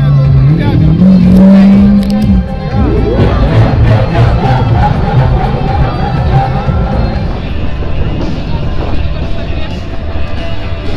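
A supercar's engine revving as it passes close by. Its note steps up in pitch about half a second in, holds, and falls away after about two seconds, giving way to crowd noise with music.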